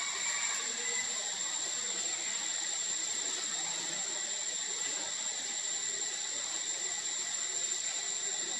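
A steady high-pitched whine over an even hiss of outdoor background noise, unchanging throughout.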